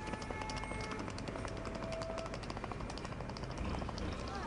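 Busy street traffic noise with scattered clicks and rattles, and a brief steady high tone lasting about a second, starting about a second and a half in.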